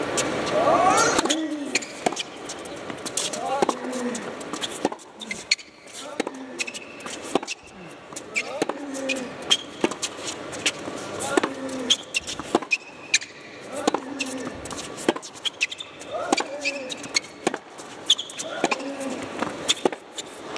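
Tennis arena crowd murmuring and talking between points, with sharp clicks of a tennis ball bouncing on the indoor hard court before a serve. The racket strikes the serve near the end.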